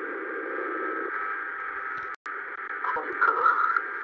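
Radio-like sound squeezed into a narrow band: a steady hiss with faint steady tones. It cuts out for an instant about two seconds in, grows louder and more uneven near the end, then stops suddenly.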